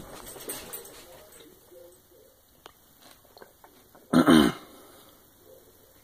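Swallowing gulps from a cup. About four seconds in, a short loud vocal sound falls in pitch.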